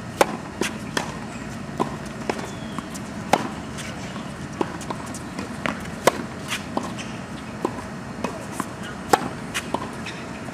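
Tennis racket hitting the ball on groundstrokes in a rally: four sharp hits, about three seconds apart, with fainter knocks between them.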